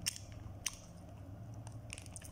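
A few brief crinkles and clicks from a plastic bread packet being handled, with one sharper click about two-thirds of a second in.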